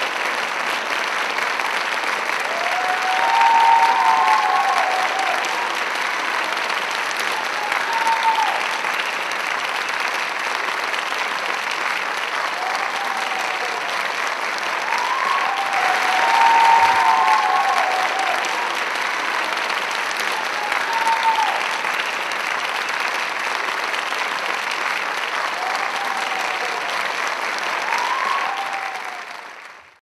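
Audience applauding steadily, with short cheers rising above the clapping several times. It fades out at the very end.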